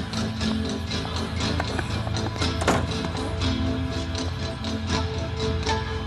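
Dramatic background music score with sustained low held notes and frequent short percussive hits, the sharpest a little under three seconds in.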